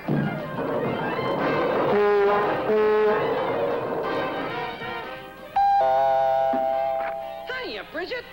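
Cartoon orchestral score music, then about five and a half seconds in a doorbell chime comes in suddenly and holds for about two seconds before fading.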